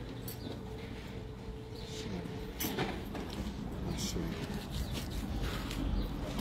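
Faint voices murmuring in the background, with a few short scattered clicks and knocks.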